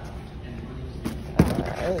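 A large plastic jug of laundry detergent thumping down into a wire shopping cart about one and a half seconds in, after a light knock just before it.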